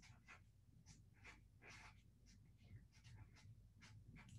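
Faint scratching of a pen writing on paper, a string of short strokes as lines and bullet points are written out.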